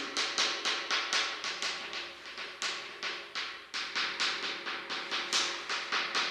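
Chalk on a blackboard: quick, sharp taps about four a second as many small circles are dotted on in a row.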